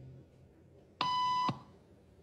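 A single electronic beep, a steady pitched tone about half a second long that starts and stops abruptly about a second in: the experiment's cue tone, at which everyone in the waiting room stands up.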